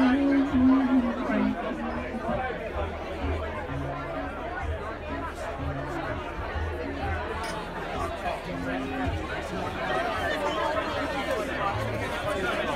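Many voices of a party crowd chattering at once, over dance music whose bass line sits low beneath the talk.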